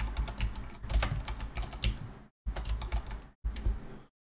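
Typing on a computer keyboard: a quick, irregular run of key clicks, broken by two short silences.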